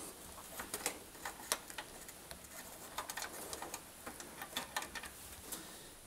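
Faint, irregular small clicks and taps of hands handling heater wires and a rubber grommet against a tumble dryer's sheet-metal panel.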